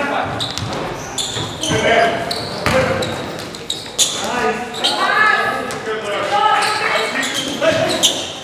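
Basketball game sounds in a gym: players' voices calling out, sneakers squeaking on the hardwood court and the ball bouncing, with sharp hits scattered through.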